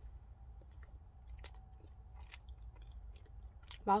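A person quietly biting into and chewing a soft chocolate-coated cream sponge cake, with faint scattered small clicks and mouth sounds.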